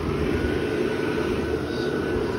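Inflatable decoration's YF-125 blower fan switched on and running steadily: a whir of rushing air with a faint high whine, as it inflates the nylon figure.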